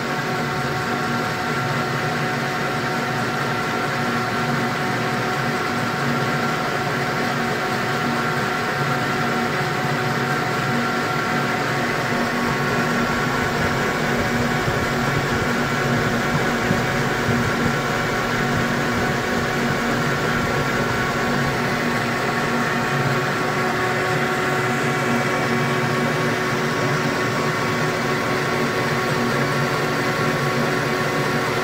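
Metal lathe running under a heavy turning cut on a slender workpiece, the cutting tool chattering: a steady ringing whine of several tones over the motor and gear noise. The chatter is caused by the workpiece's small diameter, which flexes under the cut.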